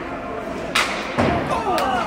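Sharp knocks and thuds from ice hockey play in a rink: a crisp knock about three quarters of a second in, a louder thud a moment later and a lighter click near the end, with voices calling out in the arena.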